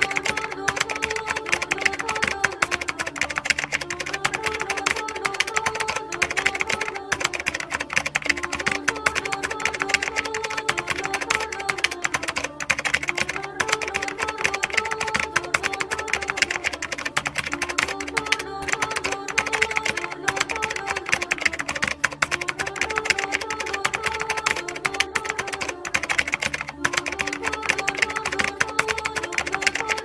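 Rapid keyboard-typing clicks running without a break over background music, a short melodic phrase repeating every few seconds.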